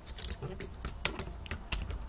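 Irregular light clicking and rattling of hard plastic toy parts as the two LEGO Hero Factory sword pieces are handled and fitted together.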